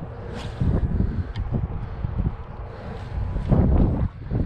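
Wind gusting across the camera microphone: an uneven low rumble that swells and drops, strongest near the end.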